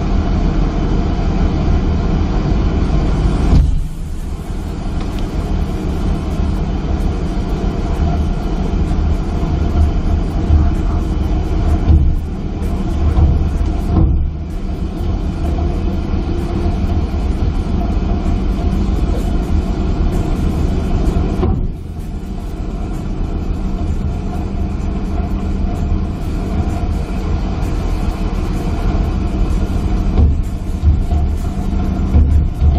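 Steady drone of a fishing trawler's engine and deck machinery as the net is hauled aboard, with a constant low hum under a broad rumble that drops in level suddenly a few times.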